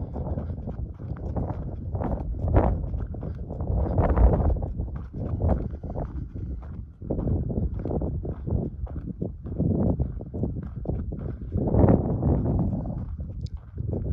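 Footsteps of a person walking at a steady pace on a dry dirt trail, a run of short, regular steps.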